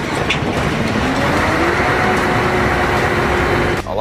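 Trailer-mounted aircraft ground support equipment unit running loud: a dense steady rush with faint tones that rise in pitch about a second in and then hold as the machine comes up to speed. It cuts off just before the end.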